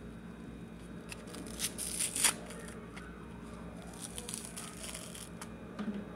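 Close rustling and crinkling, with scattered clicks and short scrapes, loudest about two seconds in and again briefly around four seconds.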